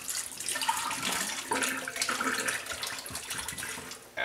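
Water running from a kitchen tap as an empty glass wine bottle is rinsed out. It stops near the end.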